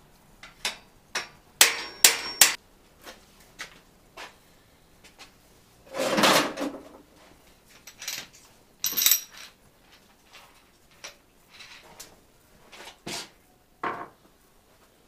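Metal hand tools and small steel parts clinking and clattering as they are picked up and set down on a workbench, a few knocks ringing briefly. About six seconds in there is a longer rummaging scrape.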